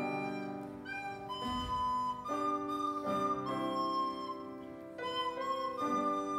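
A recorder playing a slow solo melody in held notes, accompanied by chords on an upright piano.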